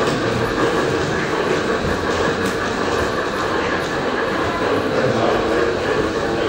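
LGB garden-scale model trains running on the layout's track: a steady mechanical rumble of motors and wheels on rail, with no clear rhythm.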